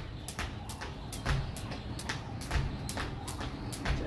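A jump rope slapping a concrete floor in a quick, steady rhythm of sharp clicks as it is turned through a side-cross skipping trick, with soft thumps of sneakers landing.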